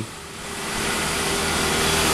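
Motorbike engine approaching and passing close by, growing steadily louder.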